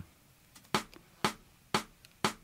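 Hand claps, three sharp claps about half a second apart, keeping a steady beat.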